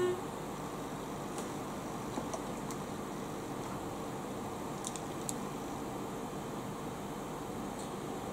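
Steady background hum and hiss with a faint constant tone, and a few faint light ticks around the middle.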